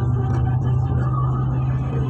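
Steady low drone of a car's engine and tyre noise, heard inside the moving car.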